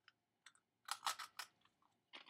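Crunching a Wheat Thin cracker between the teeth: about four sharp, quick crunches about a second in, with a few fainter crackly ticks around them.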